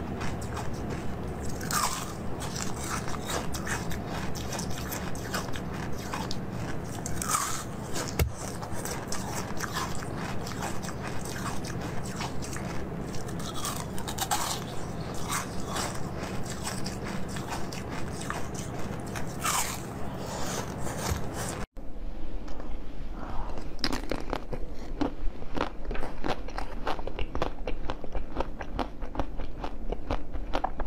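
Hard ice being bitten and chewed close to the microphone, in a run of sharp, crunchy bites. About two-thirds of the way through, an abrupt cut leads into denser, louder crunching.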